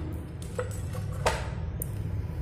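A few light metallic clicks and taps from hands handling the aluminium LED street-light housing while it is being taken apart. The sharpest click comes just past the middle.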